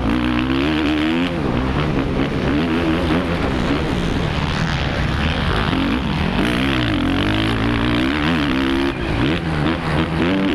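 Suzuki RM-Z450 motocross bike's single-cylinder four-stroke engine revving up and down over and over as the rider works the throttle through the turns, heard close from the rider's helmet with wind rushing past.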